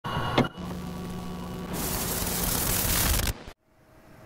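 Videotape playback sound: a sharp click, then a steady low hum under hiss. About halfway through, loud tape static takes over and then cuts off suddenly.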